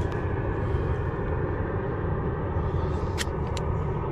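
Airliner flying overhead on the airport flight path: a steady low rumble. Two short clicks near the end.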